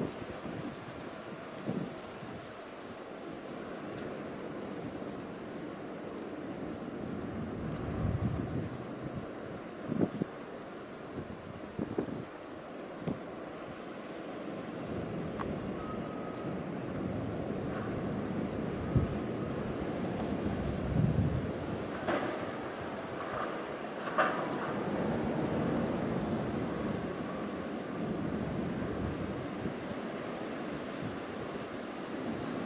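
Blizzard wind blowing steadily, with several gusts buffeting the microphone as low rumbles, and a few faint clicks.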